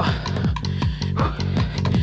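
Background music with a steady, fast beat.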